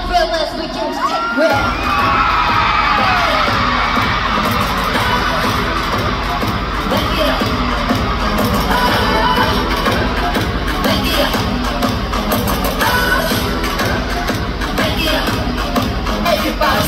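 Live pop music over an arena sound system, its heavy bass beat coming in about a second and a half in, with a crowd screaming and cheering over it.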